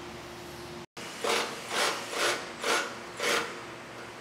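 Five short scraping, rasping strokes about half a second apart, following a brief dropout in the sound.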